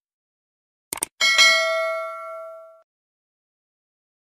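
Subscribe-button sound effect: a quick double mouse click about a second in, then a bright notification bell ding that rings out and fades over about a second and a half.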